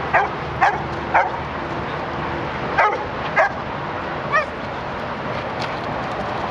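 A dog barking in short, sharp barks and yips, about six in all and irregularly spaced. The last, a little past the middle, is a clearer pitched yip.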